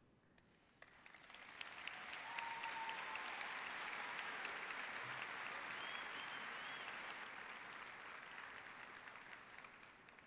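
Large audience applauding: the clapping builds up about a second in, holds full for several seconds, then fades away near the end.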